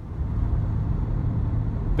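Steady low rumble of a van's engine and tyres on the road, heard from inside the cabin while driving. It swells up over the first half second, then holds even.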